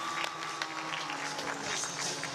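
Crowd applauding, over the steady drone of a radio-controlled model airplane's engine that drops slightly in pitch about halfway through.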